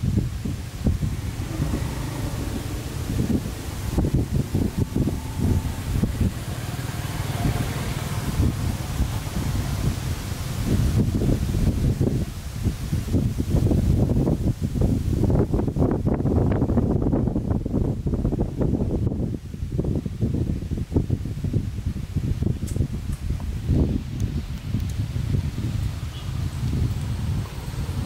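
Wind buffeting the microphone: a loud, gusty low rumble with rustling.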